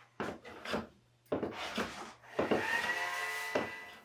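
Hand plane shaving wood in a series of short strokes, then a longer stroke that carries a high, steady ringing tone.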